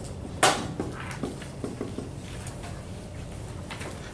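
Dry-erase marker writing on a whiteboard: a sharp tap about half a second in, then scattered faint ticks of the tip on the board, over a steady low room hum.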